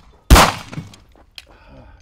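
A single pistol shot from a CZ P-10 C about a third of a second in, sharp and loud with a short echoing tail. A faint click follows about a second later.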